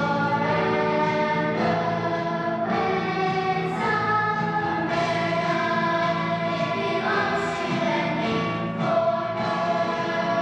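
Youth choir of girls singing, holding notes that change every second or two.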